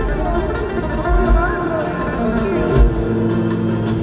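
Live band playing flamenco-style music through a concert PA: strummed acoustic guitars over bass and drums, with a melody line bending above and a few heavy low beats.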